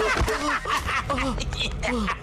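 A man laughing loudly and mockingly, with voices throughout, after a thump right at the start.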